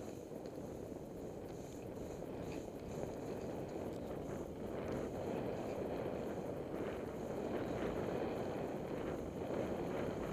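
Steady rushing noise of travel down a snowy trail, growing gradually louder: wind on the microphone mixed with the slide over the snow.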